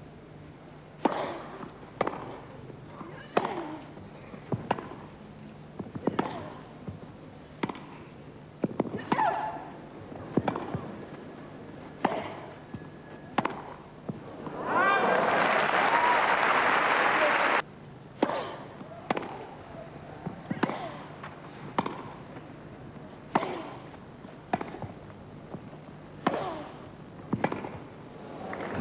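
Tennis rallies on a grass court: racket strikes on the ball roughly every second and a half, each a sharp pock. Midway a few seconds of crowd applause break in and cut off abruptly, then the strikes resume.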